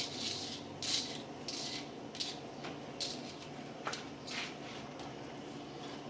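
Cauliflower florets tipped from a mesh strainer into a stainless pot of pickling brine and stirred: a handful of short, soft splashing and scraping sounds, off the boil.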